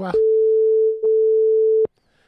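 Telephone line tone: one steady, mid-pitched beep held for most of two seconds, with a brief click-like break about a second in, cutting off sharply just before the end.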